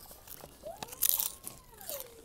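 Crunching sounds, sharpest about a second in, with one drawn-out vocal sound that rises and then falls in pitch through the second half.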